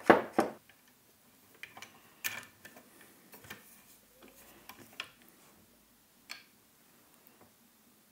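Metal parts of a Pearl Eliminator kick drum pedal being handled: two loud clicks right at the start, then scattered light clicks and taps as the beater rod is worked into the pedal's beater holder.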